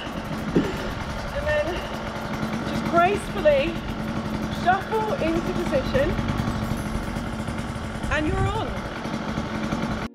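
A woman's short vocal exclamations, several brief rising and falling cries, over a steady low hum.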